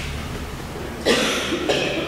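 A person coughs about a second in: a short, sudden cough, then a second, smaller sound near the end, over a steady low hum.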